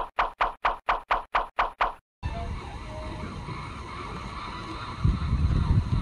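Fast, even ticking of a countdown sound effect, about four ticks a second, cutting off suddenly about two seconds in. It gives way to outdoor background noise, with a louder low rumble near the end.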